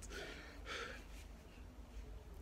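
A man's soft breath out, a short sigh, in the first second, over a faint steady low hum.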